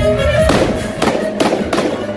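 Stage pyrotechnic effects going off over loud music: a hissing burst about half a second in, then two sharp bangs about a third of a second apart.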